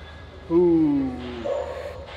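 A man's drawn-out vocal groan, falling in pitch for nearly a second, from the strain of a hard rep on a preacher curl machine.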